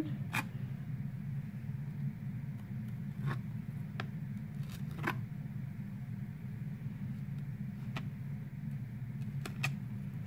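Serrated knife cutting a spinach leaf on a plastic tray: scattered light clicks and scrapes of the blade against the tray at irregular intervals, over a steady low hum.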